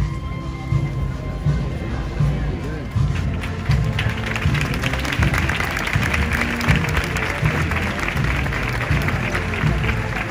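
A processional band playing, with heavy drum beats, and a crowd breaking into applause about three seconds in.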